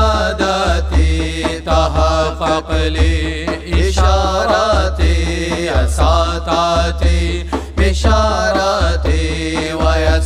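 Sufi devotional chant (dhikr) sung in Arabic with a melismatic, wavering melody over a deep, regular beat about once a second.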